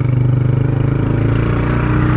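Motorcycle engine running at a steady pitch under way, loud and close to the rider.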